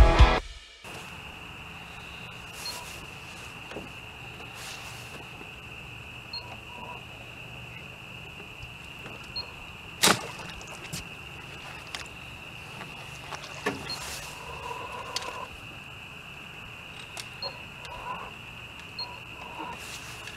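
A steady, high-pitched chorus of night insects such as crickets over a faint low hum, with a sharp knock about ten seconds in. Rock music cuts off in the first second.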